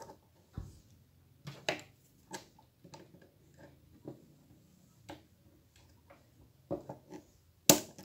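Scattered small clicks and knocks of the plastic tailgate-handle parts and metal pliers being handled and fitted, with one sharp, loud click near the end as the pliers clamp the lever in place.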